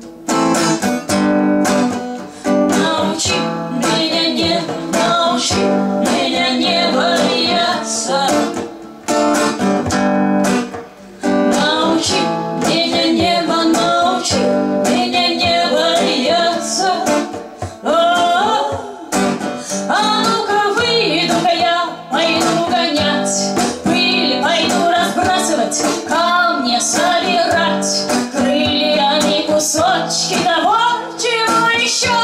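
Live acoustic song: a woman singing in Russian over a strummed electro-acoustic guitar, with a hand drum keeping the beat and short breaks between sung lines.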